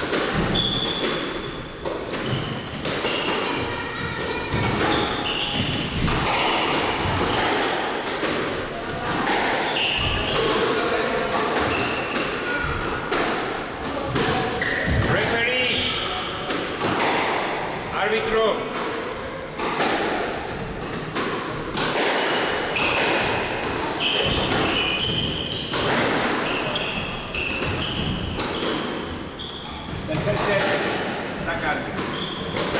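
Squash rally: the ball's repeated sharp hits off racquets and court walls, echoing in the court, with short high squeaks from sneakers on the wooden floor.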